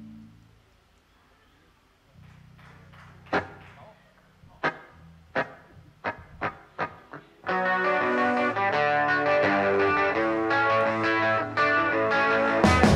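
Live rock band starting a song. After a short lull a low note is held and a handful of sharp struck accents ring out, then about seven and a half seconds in the full band of electric guitars, bass and drums comes in and keeps playing loudly.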